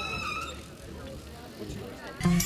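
Outdoor skatepark ambience: a voice fades out about half a second in, over a low, steady rumble of BMX bikes rolling on concrete.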